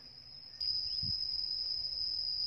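Insects stridulating: one thin, steady, high-pitched buzzing tone, unbroken, that steps up in level about half a second in.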